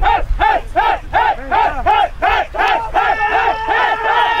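Music: a rising-and-falling vocal cry repeated evenly about three times a second, with the low beat dropping out early on and a held chord coming in about three seconds in.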